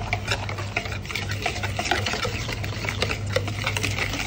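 Wire whisk beating batter in a ceramic bowl: rapid, irregular clicks and scrapes as the wires hit and drag against the bowl's side.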